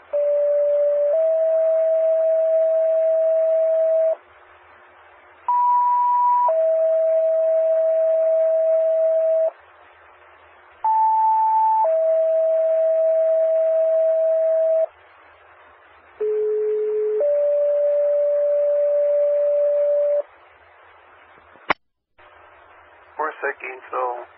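Four two-tone sequential paging signals over a fire-dispatch radio channel, alerting fire companies. Each is a steady tone of about a second followed by a longer steady tone of about three seconds, and the short first tone differs in pitch from page to page. A sharp click follows near the end.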